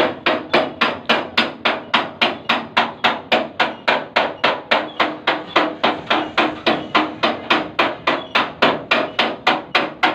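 Hammer beating sheet metal in quick, even blows, about three or four a second, with a slight metallic ring: panel-beating (denting) work.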